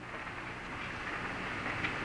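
A pause between spoken sentences, holding only the steady background hiss and low hum of an old recording.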